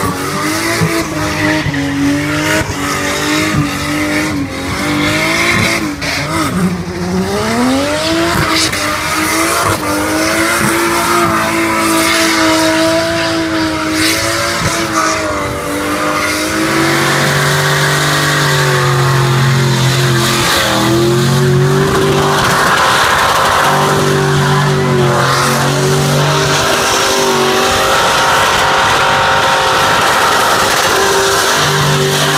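Car engine held at high revs during a burnout, rear tyres spinning and screeching on the asphalt. The revs fall away and climb back about six seconds in, then stay high and steady through the second half.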